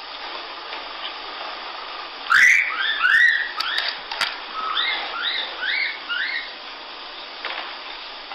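An infant rhesus monkey calling: a run of about a dozen short calls, each rising and falling in pitch, starting a little over two seconds in. They play over the steady hiss of an old film soundtrack.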